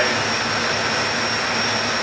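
A passenger boat under way, its engine running steadily under a constant rush of wind and water, with a thin high whine held throughout.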